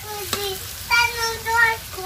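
A small child singing in a high voice, loudest about a second in, over a metal spatula stirring and scraping vegetables frying in oil in an iron wok, with a couple of sharp clicks of the spatula on the pan near the start.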